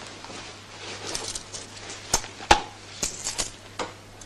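Handling noises of a coin being looked for and passed over: a few sharp clicks and small ticks, the loudest about two and a half seconds in. Under them is the old film soundtrack's steady hiss and faint low hum.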